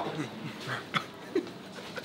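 A few short, faint voice sounds, about three in quick succession, over a quiet background, from a man tasting food.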